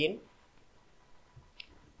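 A single faint computer mouse click about one and a half seconds in, over quiet room tone.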